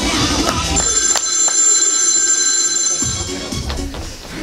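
Dance music cuts off about a second in and a bell rings steadily for about two and a half seconds.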